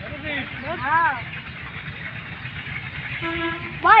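High-pitched voices calling out in drawn-out shouts that rise and fall in pitch, twice: once about a second in and again near the end, with one held note just before the second call. A steady low rumble runs underneath.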